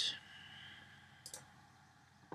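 A single computer mouse click, a little over a second in, against faint steady background hiss, as a menu item is chosen to run the program.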